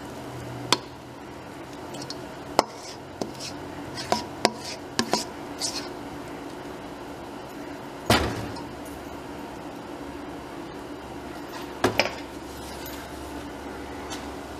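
A metal spoon knocking and scraping dumpling dough out of a stainless steel mixing bowl, with scattered clinks and a heavier clunk about eight seconds in.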